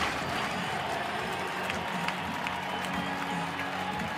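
A crowd applauding steadily, with background music running under it.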